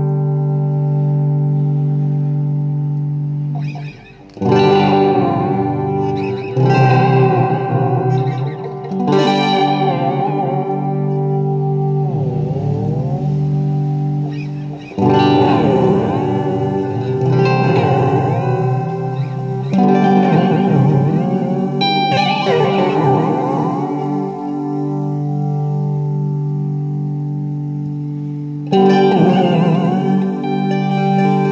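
Electric guitar played through a fuzz pedal, a Clari(not) clone: chords struck every few seconds and left to ring out with long fuzzy sustain, and a brief dip in level about four seconds in.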